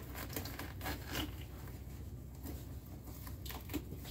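Outer skin of a loofah gourd being peeled off by hand: faint crackling and tearing, in a cluster of quick crackles in the first second or so and again near the end.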